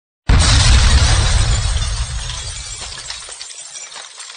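A sudden loud crash of shattering glass, its low boom dying away within about three seconds while fine high tinkling of debris trails on.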